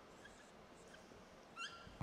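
Dry-erase marker writing on a whiteboard: faint, with small chirps of the marker tip and one short, louder squeak about one and a half seconds in.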